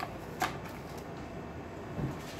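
Light handling noise: two short clicks or rustles about half a second apart, then quiet room tone.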